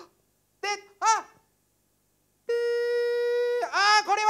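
A man's voice imitating roulette sound effects: two short pitched syllables about a second in, a pause, then a long held beep-like note at a steady pitch that dips and breaks into quick syllables near the end.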